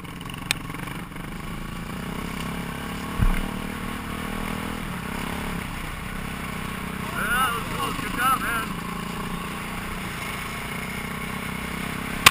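2006 Kawasaki KX450F's single-cylinder four-stroke engine running at low, steady revs as the bike rolls along, heard from a helmet-mounted camera. A low thump comes about three seconds in, and a voice is heard briefly a little past the middle.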